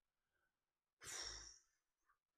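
A man's single heavy sigh into a close microphone, about a second in, with a low breath thump on the mic. The rest is near silence.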